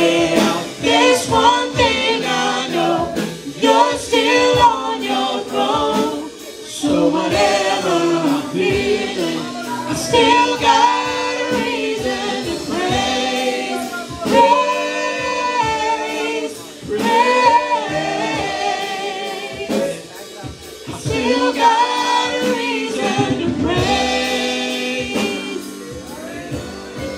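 Live gospel worship song: a praise team of a woman and a man singing into microphones with keyboard accompaniment, other voices joining in.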